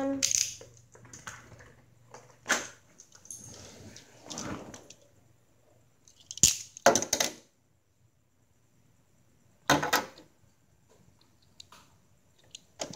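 Short clicks, taps and rustles of plastic Beyblade tops and parts being handled close to the microphone. They come in several separate bursts, with a quiet stretch about two-thirds of the way through.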